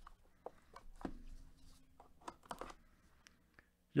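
Quiet handling of trading-card hobby boxes and packs: scattered light taps, clicks and cardboard rustles as the boxes are shifted on the table.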